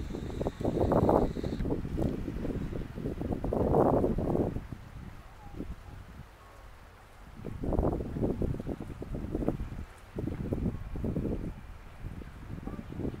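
Wind buffeting the camera's microphone in gusts, a low rumbling rush that swells and falls several times, with a short lull about halfway through.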